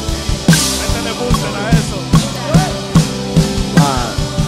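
Live band music led by a drum kit: a steady bass-drum beat with snare hits and a cymbal crash about half a second in, over the rest of the band.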